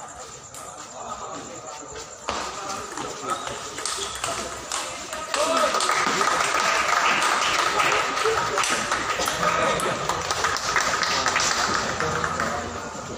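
Table tennis rally: the ball clicking off bats and table, with a crowd of spectators' voices that jumps to loud shouting about five seconds in and stays loud.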